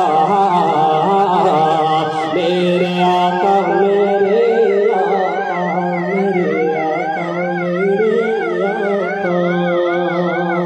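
A man singing a devotional song into a microphone over an amplified sound system, holding long notes whose pitch wavers up and down evenly, about two to three times a second, above a steady low drone.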